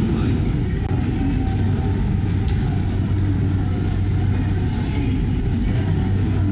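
Busy train station ambience: a steady low hum under the general noise of a crowded platform, with indistinct voices.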